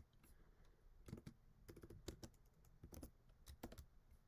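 Faint typing on a computer keyboard: scattered key clicks in short clusters.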